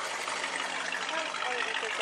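The V8 engine of a 1969 Dodge Charger R/T running smoothly, a steady sound without sudden events, with faint voices over it.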